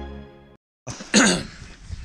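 Background music fading out, then after a brief silence a person coughs once, about a second in.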